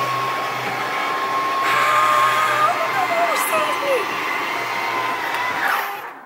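RV slide-out motor running as the slide room retracts: a steady whine over a low hum that cuts off near the end when the slide stops.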